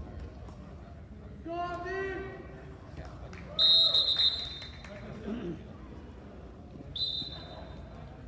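Referee's whistle blown twice: a loud blast about halfway through and a shorter, softer one near the end, stopping the wrestling. A voice shouts shortly before the first blast.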